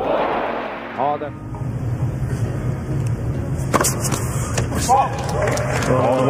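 Old tennis broadcast sound: a brief rush of crowd noise at the start, then a steady low hum with two sharp ball strikes about a second apart and short voice calls from the court.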